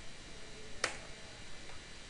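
A single sharp click about a second in, made while working the computer (a key press or mouse click), over a faint steady hiss.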